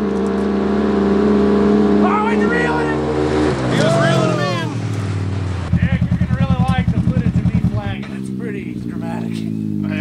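UTV engines held at high revs as two side-by-sides race on a dirt track, one of them a Polaris RZR RS1 with its 1000 cc parallel-twin. About two and a half seconds in the engine note drops as they come off the throttle, with voices and laughter over it, then an engine throbs at low revs close by and winds down again near the end.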